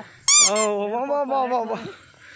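A short, very high-pitched squeal in two quick arcs, the loudest sound, followed at once by a man's voice drawn out for over a second.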